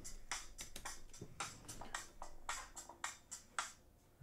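Quiet electronic music: short, clipped synth notes in an uneven pattern, with a faint held tone under the middle of it.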